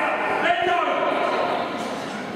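Indistinct voices talking in a large indoor hall, with no clear words.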